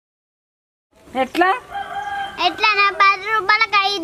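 About a second of dead silence, then a rooster crowing loudly, with a long held, rough-edged call near the end.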